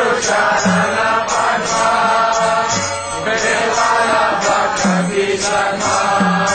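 Kirtan: a group of voices chanting a mantra together over a steady beat of jingling hand cymbals and a drum.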